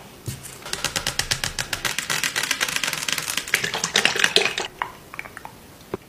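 Rapid, crisp tapping and clicking, about ten clicks a second for roughly four seconds, then a few scattered clicks.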